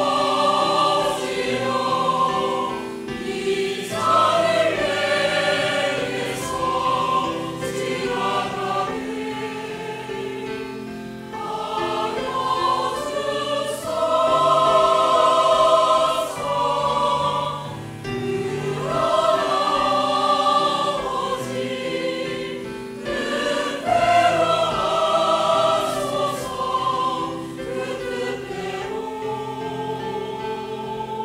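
A mixed choir of women's and men's voices singing a slow Korean sacred cantata in phrases of a few seconds each that swell and ease off. The words are Jesus's prayer in Gethsemane: "My Father, let this cup pass from me; yet as you will."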